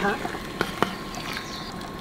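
Metal spoon stirring cubed beef fat in a stainless steel pot, clinking against it twice in quick succession just under a second in, over the steady bubbling of the fat and water simmering as the fat renders.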